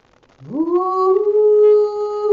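A woman singing a Tao song. About half a second in, her voice slides up from low into one long held note.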